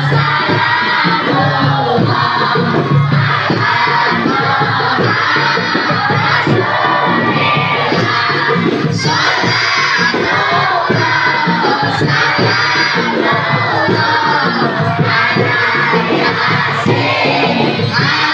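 Sholawat sung by a crowd of children together with a woman's lead voice over a microphone, backed by marawis hand drums beating a steady rhythm.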